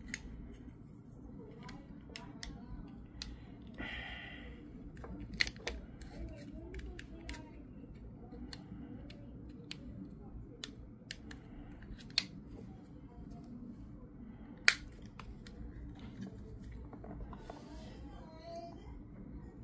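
Scattered sharp clicks and taps of small hard plastic parts and tools being handled as a car key fob is worked on, three of them louder than the rest. A steady low hum runs underneath.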